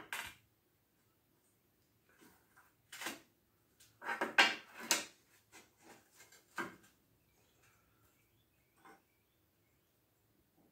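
Scattered steel-on-steel clinks and knocks as a square-tube receiver bracket and a steel square are shifted and set against a steel plate on a welding table. There are a few single taps and a cluster of sharper clinks about four to five seconds in.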